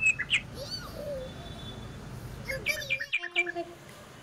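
Small birds chirping in short bursts, a few chirps early and a louder run near the end, over a steady low hum of street noise.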